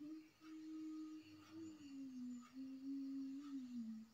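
A woman humming a slow tune with her mouth closed, a single wavering note line that drifts downward in pitch toward the end.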